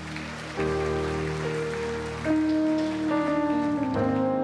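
Live worship music from a church praise team: held sung and accompanied notes, rising in level as new notes come in about half a second in and again just past two seconds. A steady noisy wash runs underneath.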